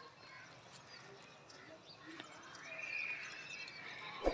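A distant high-pitched animal call, held for about a second in the second half, over faint outdoor background noise.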